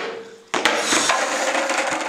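Skateboard landing hard on brick pavers with a sharp clack a little after half a second in, then its wheels rattling across the bricks.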